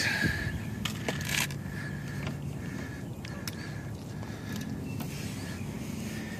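A few light clicks and scrapes as a caught rock bass is handled and laid on the wet ground, most of them about a second in, over a steady low hum and a faint high-pitched drone.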